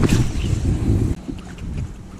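Wind buffeting the camera microphone, a heavy low rumble that eases off after about a second, with a knock right at the start.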